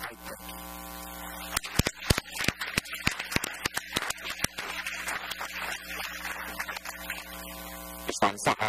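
Steady electrical mains hum throughout. About a second and a half in, scattered applause with sharp clicks starts up, thins out and fades about a second before the end.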